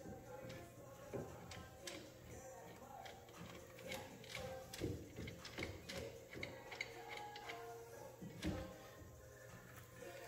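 Faint, irregular metallic clicks and taps as a brake caliper mounting bolt is hand-threaded and the caliper is fitted onto the hub carrier, over a steady low hum and faint background music.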